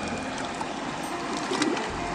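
Water sloshing and trickling as a large wooden gold pan is swirled in shallow river water, washing sand and gravel, with a few faint ticks.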